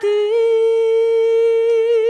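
A woman singing unaccompanied, holding one long note with a slight waver.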